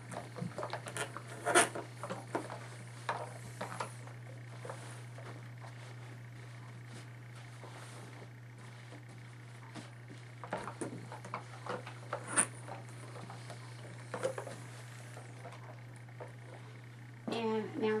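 Scattered soft clicks and rustles of pants fabric being smoothed and lifted on an ironing board, and a steam iron being moved and set down, over a steady low hum.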